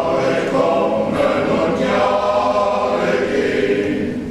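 A choir singing long held notes in harmony.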